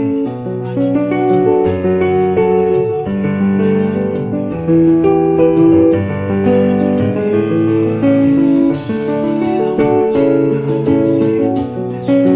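Yamaha portable keyboard played with a piano sound: two-handed chords, each held for about a second before the next.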